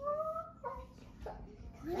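A child's whiny, closed-mouth vocal sound, rising in pitch at the start, followed by two short vocal sounds.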